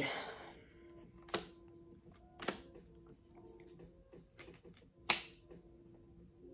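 Three sharp clicks spaced a second or more apart, the last the loudest, with a few fainter ticks between, over a faint steady hum.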